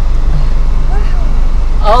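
Car engine idling, a loud steady low rumble heard from inside the cabin, with faint voices over it.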